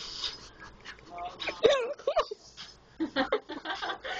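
People's voices, with one high voice gliding up and down in pitch about halfway through, the loudest moment.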